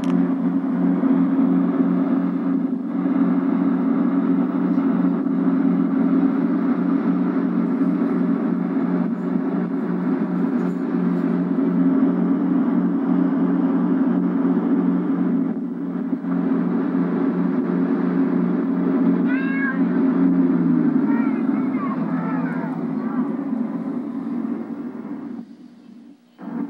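Ski boat's engine running steadily under tow, played back through a television speaker, its pitch falling from about two-thirds of the way in as the boat slows. A few short, high wavering cries sound over it near the same point.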